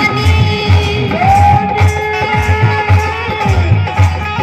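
A woman singing a bhagait, a devotional folk song, to harmonium, holding one long note through the middle, over a steady low drumbeat of about three beats a second.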